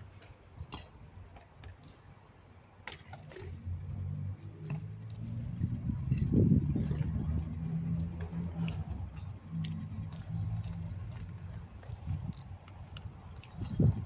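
A low engine hum that builds from about four seconds in, is loudest around the middle and fades away again, like a motor vehicle passing by, with a few light clicks and knocks over it.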